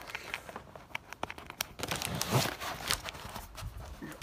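Clear plastic air-cushion packaging crinkling and rustling as a laptop is pulled out of it by hand, with scattered small clicks and a louder rustle a little past halfway.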